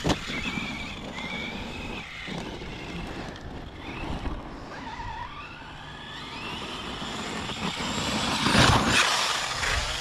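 Traxxas Sledge RC monster truck's brushless electric motor whining, its pitch rising and falling as the throttle is worked, with tyres churning over dirt. It gets louder near the end as the truck speeds up and launches off a jump.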